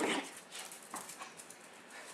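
A small dog playing with a toy on a tiled floor: a short dog sound right at the start, then light clicks of claws and toy on the tiles.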